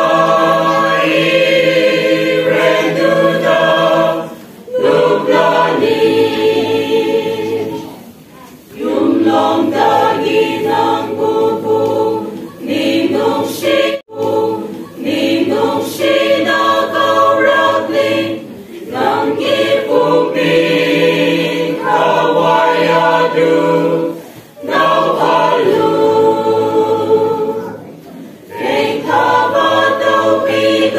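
A choir singing a Manipuri Christian hymn in sustained phrases, with a short break for breath every few seconds.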